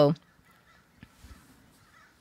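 A woman's spoken word trailing off, then near silence with a faint click about a second in and a few fainter ticks just after.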